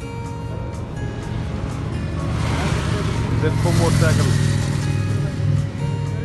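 A road vehicle passing by, its engine and tyre noise swelling to a peak about four seconds in and then fading, over background music.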